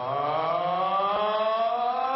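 Boxing ring announcer's voice drawing out a fighter's name in one long held call, slowly rising in pitch.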